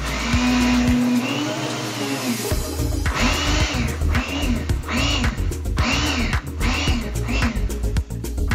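Electric countertop blender run in short pulses, its motor rising in pitch and falling back each time, about eight times in a row, churning banana, apple and water into a smoothie. Background music plays underneath.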